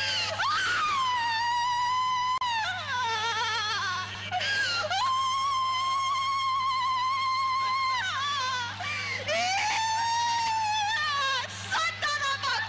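A person wailing in long, very high-pitched cries that waver in pitch, about four in a row with short breaks between them, over a steady electrical hum.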